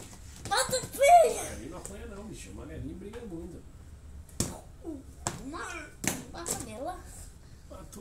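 Playful voices of a boy and a man, the boy laughing near the start, with three sharp knocks of plastic toy dinosaurs about halfway through.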